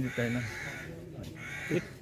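A bird calling twice, two long raspy calls, the second starting about a second and a half in, with a man's voice briefly at the start.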